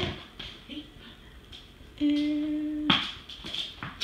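A person humming one steady note for about a second, about two seconds in, with faint clicks and handling sounds around it.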